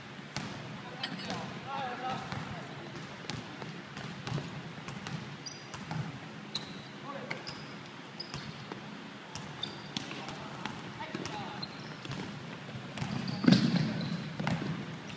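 A basketball bouncing on a wooden gym floor amid players' footfalls, with short high sneaker squeaks and voices calling in a large hall; a louder thud comes about a second before the end.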